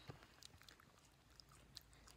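Near silence with faint, scattered mouth clicks of someone chewing food.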